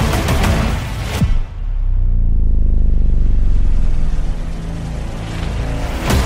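Driving background music with a heavy beat. About a second in it breaks on a sharp hit, and a deep, sustained low boom rumbles under thinned-out music for several seconds before the full beat returns at the end.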